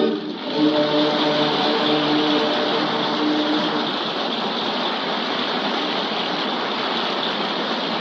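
Audience applauding at the close of an operatic aria, with a held final chord sounding under it for about the first four seconds before dying away.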